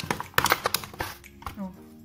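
A clear plastic clamshell produce container of fresh mint being pried open: a quick run of sharp plastic clicks and crackles from the snapping lid, lasting under a second.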